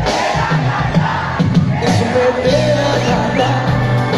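A live band playing amplified music through a stage PA, electric guitars, bass and drums with a singer, while a crowd cheers and shouts over it.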